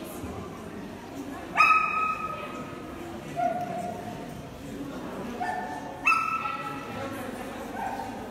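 A dog gives two loud, high-pitched cries about four and a half seconds apart, each starting sharply and held briefly, with fainter, shorter cries in between.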